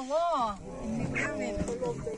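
A live chicken held upside down by its legs, calling harshly while it is handed from one person to another, with voices over it.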